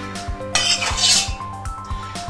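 A metal spoon scraping against the inside of a stainless steel saucepan of hot palm oil, one brief scrape about half a second in, over background music with held notes and a steady beat.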